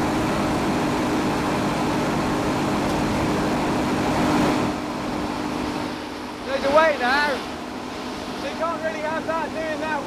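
FG Wilson 200 kVA diesel generator set, driven by a Scania engine, running at steady speed with its enclosure doors open: a constant hum over loud engine noise. The engine noise drops noticeably about halfway through.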